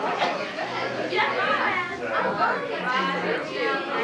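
Several voices talking over one another, children among them, with no single clear speaker.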